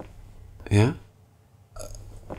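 A man's brief spoken reply, 'Ja? Uh,' one short syllable with a bending pitch a little under a second in, then faint room tone.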